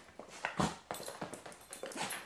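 Dogs sniffing at a new artificial-leather dog bed: a few short, irregular sniffs with faint rustling.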